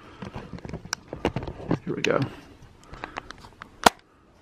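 Handling noise from a camera being picked up and carried: a string of light clicks and knocks, with one sharper click near the end.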